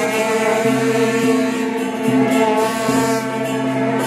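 Several long straight brass processional horns blown together, holding overlapping steady drone notes; the lower notes drop out and come back in about every second while a higher note holds on.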